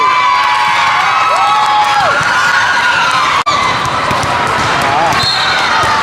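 Busy indoor volleyball hall: players' and spectators' voices, with a volleyball bouncing on the court floor. A short referee's whistle blast sounds about five seconds in, the signal to serve. The sound drops out for an instant about halfway through.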